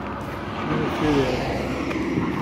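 A motor vehicle passing by over steady background traffic noise. Its sound swells and peaks about a second in.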